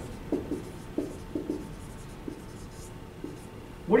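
Felt-tip marker writing a word on a whiteboard: a run of short strokes, closely spaced in the first second and a half, then sparser.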